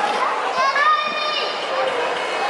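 Children's voices at play: a child's high-pitched call held for about a second, over steady chatter and shouts from other children and adults.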